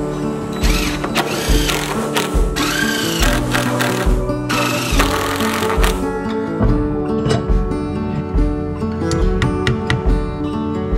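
Cordless impact driver driving screws into a wooden joist in four short bursts over the first six seconds, under acoustic guitar background music.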